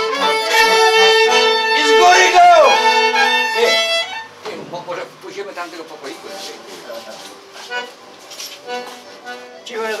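Fiddle and accordion playing a Polish folk tune together, the accordion holding long notes under the fiddle's melody. The music breaks off about four seconds in, and quieter talking follows.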